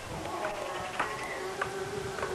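A steady buzzing hum of several held tones, broken by a few sharp clicks.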